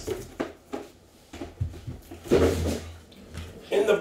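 Cardboard trading-card box being handled and moved off the table: a few soft knocks and scrapes in the first second, with a low, indistinct voice a little past the middle.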